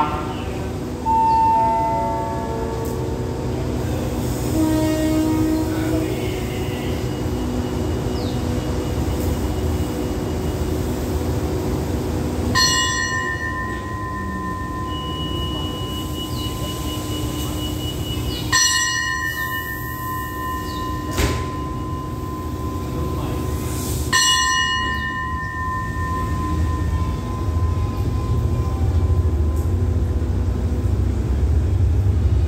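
A short descending chime of pitched notes, then a bell struck three times about six seconds apart, each strike ringing on for several seconds. A diesel express train's low engine rumble runs throughout and grows louder near the end.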